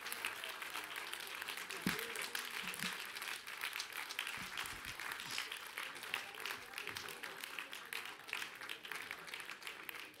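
Church congregation applauding, a dense patter of many hands clapping at the close of a sermon.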